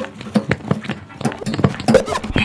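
Free-improvised electroacoustic music: a dense, irregular run of clicks, knocks and brief pitched fragments from percussion and electronics, with a low tone coming and going underneath.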